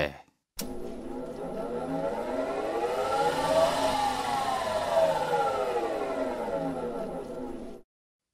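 Sound effect of an electric lumber-cutting power saw's motor running, its whine rising in pitch to a peak about halfway through and then falling before it stops.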